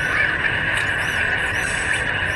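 Outdoor ambience from phone footage: a steady high-pitched hiss, with short chirps above it repeating about twice a second.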